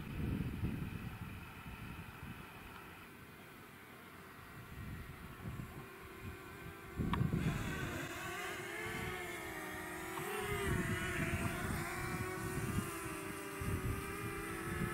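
DJI Mavic quadcopter's propellers buzzing, faint at first and suddenly louder about halfway through as the drone comes in low, its pitch wavering a little. Wind rumbles on the microphone throughout.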